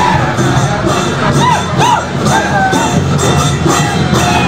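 A crowd of men cheering and shouting over music, with a couple of short rising-and-falling calls a little before halfway.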